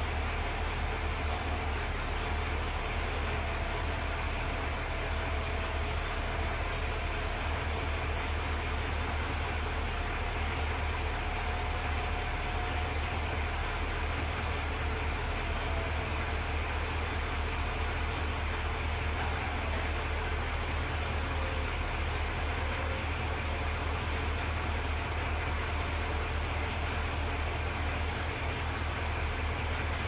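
1965 Cadillac Eldorado's 429 V8 idling with a steady low hum while the power convertible top folds down and rises again, with a faint whine from the top's pump motor while it lowers and a single click about 20 seconds in.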